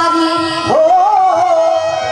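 A woman singing a long held vowel into a microphone, sliding sharply up to a higher held note about three-quarters of a second in, over musical accompaniment.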